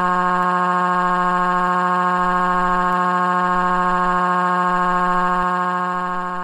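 A synthetic text-to-speech voice holding one drawn-out "uh" at a dead-steady pitch, with no wavering. It begins to fade near the end.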